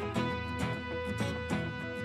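Instrumental background music with held notes.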